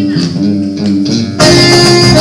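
A live regional band playing. The guitars and bass carry a short plucked passage with the rest held back, then at about one and a half seconds the full band with accordion and tambourine comes back in together.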